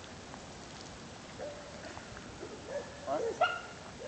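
A dog whining in a series of short, wavering notes, starting about a second and a half in and loudest about three seconds in.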